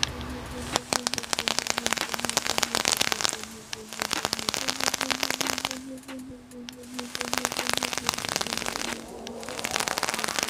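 The coil of a vape's rebuildable atomizer crackling and popping densely as e-liquid sizzles on it, fired at 75 watts, in two long draws of about three and four seconds.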